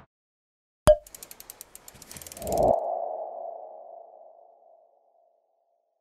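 Logo sting sound effect: a sharp hit about a second in, a run of quick ticks, then a swell into a single ringing tone that fades away over about two seconds.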